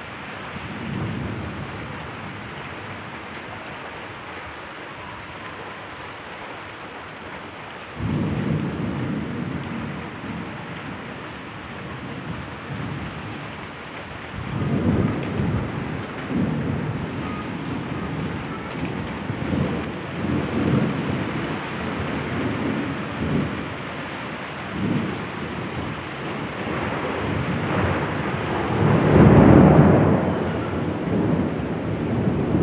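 Steady rain with rolling thunder. A faint rumble comes about a second in, then thunder breaks in suddenly about eight seconds in and keeps rolling in waves through the rest, with the loudest peal near the end.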